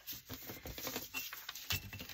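Paper scraps being handled and shifted on a cutting mat, with quick light rustles and small taps as a metal ruler is moved and set down on the paper.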